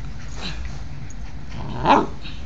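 A dog at play gives one short, sharp yelp that rises in pitch near the end, with a smaller sound from the dogs about half a second in.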